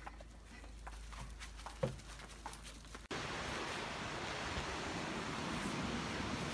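Quiet indoor room tone with a low hum and a few faint clicks, then about three seconds in an abrupt change to a steady rush of wind and lake waves breaking in strong wind.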